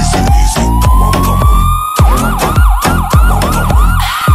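Bass-heavy electronic music with a siren sample over a heavy bass beat: a slow rising wail for the first two seconds, then a fast yelp of about four quick rises a second.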